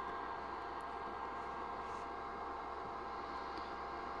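Steady background hiss with a faint steady hum, and no distinct sound event: room tone.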